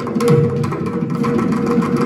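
Mridangam playing a fast, dense run of strokes, the right head ringing at a steady pitch over deep bass strokes from the left head.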